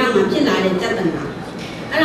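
A woman lecturing in Burmese: continuous speech only.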